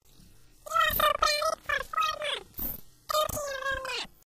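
A very high-pitched, squeaky cartoon-style voice making a string of short sounds with no clear words, in two bursts: one starting under a second in, and a shorter one about three seconds in.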